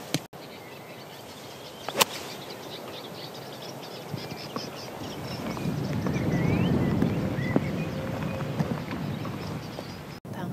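Outdoor golf-course ambience with birds chirping, and one sharp club-on-ball strike about two seconds in. In the second half a low rushing noise swells and fades.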